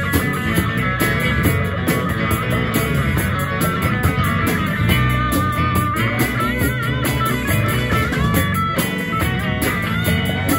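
Live rock band playing an instrumental jam: electric guitars, bass guitar and drum kit. About six to seven seconds in, a high lead line bends and wavers in pitch.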